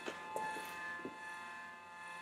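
Faint steady electrical whine from an idling inverter MIG welder, with a few soft clicks.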